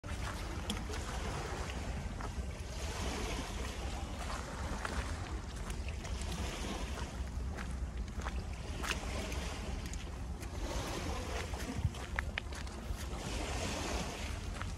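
Wind buffeting the microphone with a steady low rumble over the open-air hiss of a calm seashore, with scattered light scuffs and clicks of footsteps on the gritty concrete path.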